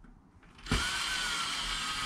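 Ryobi cordless drill driving a screw into wood: the motor starts about two-thirds of a second in and runs steadily, its whine sagging slightly in pitch under load.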